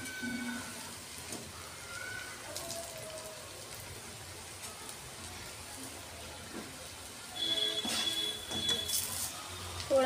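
Moong dal dumplings sizzling as they deep-fry in hot oil in a steel kadhai. A louder spell of steady tones joins about seven seconds in.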